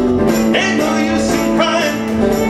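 Small acoustic string band playing live: fiddle, strummed acoustic guitar and upright bass, with a melody that slides up into its notes twice over a held low note.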